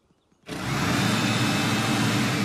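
A cartoon backpack power blower starts about half a second in and runs steadily: a motor drone under a rushing air hiss.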